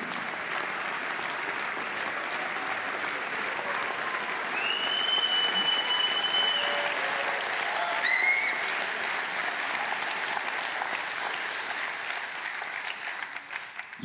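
Theatre audience applauding steadily, easing off near the end. A long high whistle cuts through the applause a few seconds in, and a short rising whistle follows about halfway through.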